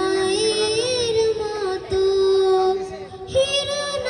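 A girl singing solo into a microphone, holding long notes with vibrato. After a short break about three seconds in, she starts a new phrase on a higher note.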